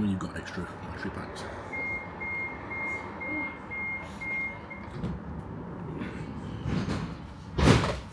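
Tram door warning beeping, about seven short high beeps at roughly two a second, over the tram's steady running noise. A short, loud rushing thump comes near the end.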